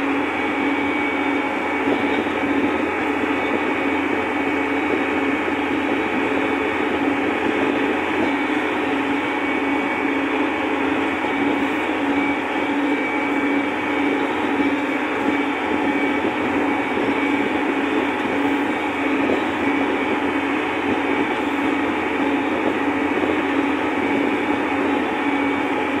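Tractor's diesel engine running steadily at one constant pitch, heard from inside the cab while it drives along a dirt track.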